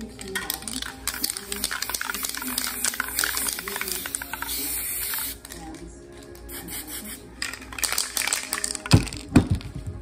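Aerosol spray paint can spraying red paint in one long continuous hiss that cuts off sharply about five seconds in. Two heavy thumps come near the end.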